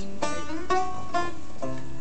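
Banjo picking a short instrumental fill between sung lines, single plucked notes about twice a second, each ringing briefly.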